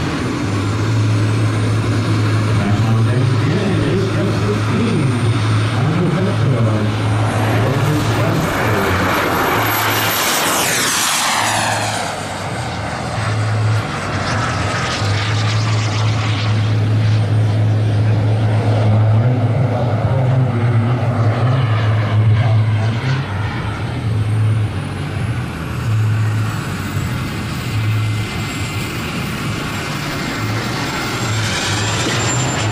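Turbine engine of a 1/5-scale F-16 RC jet running at takeoff power, its high whine rising as the jet accelerates. About ten seconds in, the whine sweeps steeply down in pitch as the jet flies past, then rises again near the end; a loud low hum runs underneath.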